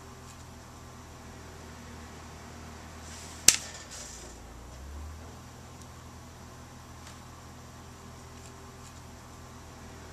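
Light tool sounds of a thin pointed tool working a clay cup handle, over a steady low hum. One sharp click about three and a half seconds in is the loudest sound, followed shortly by a brief low bump.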